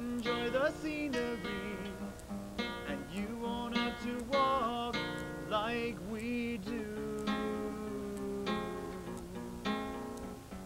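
A man singing a song to his own strummed acoustic guitar; the held notes waver with vibrato, and one note is held for well over a second about seven seconds in.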